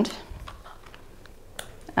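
A few faint ticks and handling noise from a pair of EMDR tappers and their small control box as they are switched on and handled, with one sharper click near the end.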